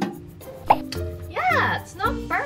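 Background music with held notes, a short pop about two-thirds of a second in, and then a brief wordless vocal sound whose pitch rises and falls.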